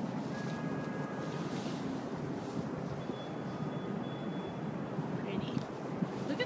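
Wind buffeting a phone's microphone held out in the open air high above the city, a steady rumbling noise with faint thin tones above it.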